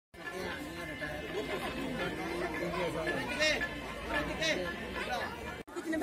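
Several people talking at once in overlapping chatter, with no one voice standing out. The sound breaks off briefly near the end at a cut.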